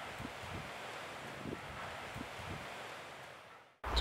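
Wind and sea surf at a rocky shore: a steady hiss with a few faint low thumps, fading out just before the end.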